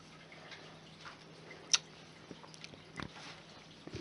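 Quiet sips and swallows of a drink from a glass, with one sharp click about halfway through and a fainter one near the end.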